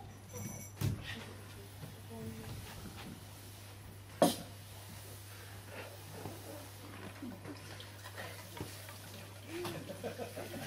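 A quiet pause on a small stage: a steady low hum with faint handling and movement noises, broken by one sharp click about four seconds in.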